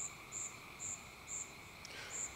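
A faint insect chirping at an even pace, about two short high chirps a second, over a steady high-pitched tone.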